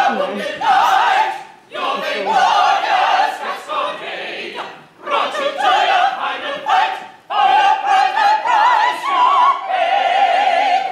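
Stage cast singing together in an operatic style with wide vibrato, in phrases broken by short pauses.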